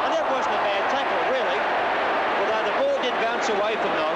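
A man's voice talking over a steady haze of crowd noise in an old television broadcast of an Australian rules football match.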